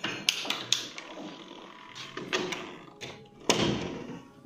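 A door being handled: several sharp clicks of its latch and handle in the first second, then a heavier thud about three and a half seconds in.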